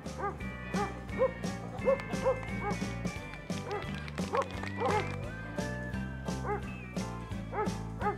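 A German shepherd police dog barking in several short runs over background music with a steady beat.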